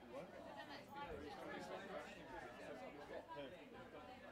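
Faint, indistinct chatter of several voices in the open air.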